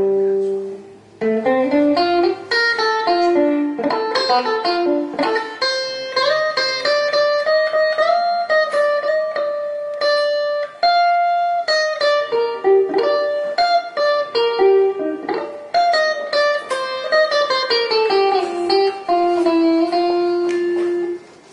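Electric guitar played solo: a single-note melodic line of quick runs mixed with held notes, with a brief break about a second in.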